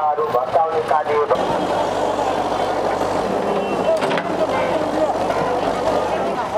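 Voices for about the first second, then a backhoe loader's diesel engine running steadily under crowd chatter.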